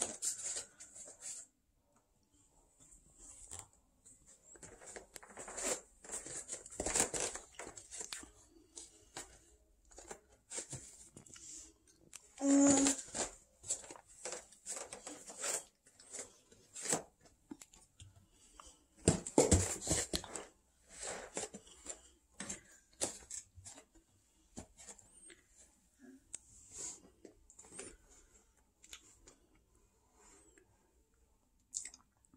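A toddler eating a banana: scattered soft clicks, smacks and rustles of mouth and banana-peel handling, loudest in two short clusters about thirteen and twenty seconds in.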